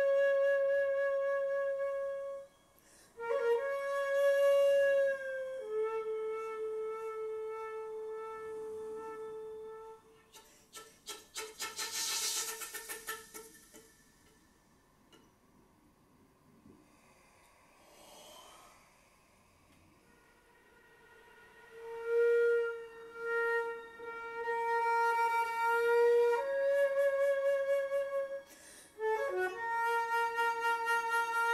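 Solo flute playing long held notes in a slow piece. About ten seconds in comes a stretch of rapid, breathy pulses, an extended technique. A hushed pause of several seconds follows, and then the long held notes return.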